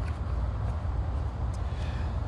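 A paperback picture-book page being turned, a faint papery rustle over a steady low rumble.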